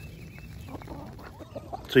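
Faint, soft calls and pecking rustle of Pekin ducks feeding on larvae in the grass.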